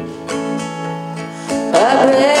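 Acoustic guitar strummed, its chords ringing steadily; a woman's voice comes in singing near the end.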